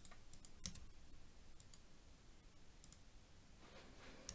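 Near silence with a few faint, sharp clicks of a computer mouse, several coming in quick pairs.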